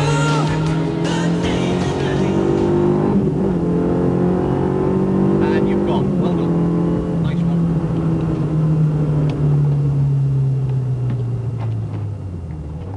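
Rally car engine, a VW Polo, running hard at high revs, its pitch held steady for seconds at a time and easing slowly down. The tone breaks briefly about three and six seconds in.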